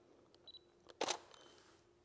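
A digital SLR camera's short, high autofocus-confirmation beep, then about half a second later a single sharp shutter click as a test frame is taken.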